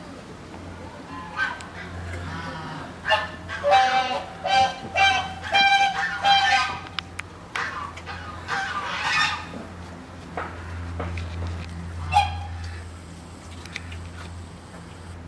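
A run of short, loud honk-like animal calls, about half a dozen in quick succession a few seconds in. A few more come near the middle and one near the end.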